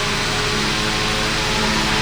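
Polar Cub 12-inch electric fan (A.C. Gilbert, 1940s) running steadily: a whoosh of air from the spinning blades over a steady motor hum and buzz. The buzz turned out to come from frayed wiring and worn solder connections in the fan.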